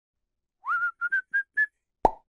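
A short whistled phrase: a first note gliding up, then four short notes stepping slightly higher in pitch.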